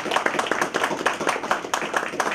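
Audience applauding: a dense, continuous run of hand claps.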